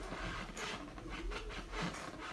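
Self-balancing hoverboard spinning in place on carpet: its hub motors whirring and its wheels scrubbing the carpet, in an uneven noise that comes and goes.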